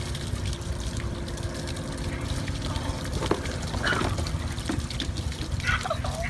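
A steady low rushing noise like running water, with a few brief faint sounds in the second half.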